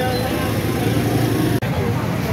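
Busy street noise from a crowd: motorcycle engines running amid a babble of voices. The sound cuts out for an instant about a second and a half in.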